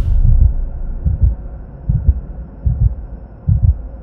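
Logo-sting sound effect: deep, heartbeat-like thuds about every three-quarters of a second over a steady low hum.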